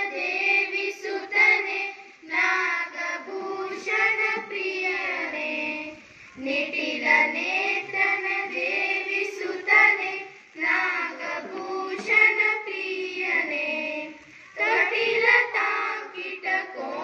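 A group of children singing a prayer song in unison into a microphone, in sung lines separated by short breaks about every four seconds.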